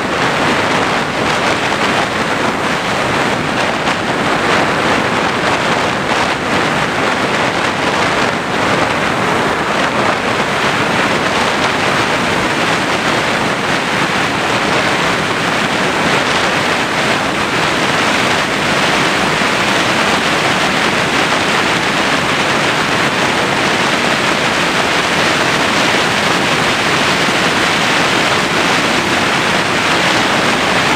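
Steady, loud rush of airflow over a camera carried on the nose of an RC motor glider in flight, with no clear motor tone above it.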